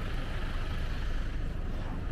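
Steady outdoor background noise: a low rumble with a hiss over it and no distinct events.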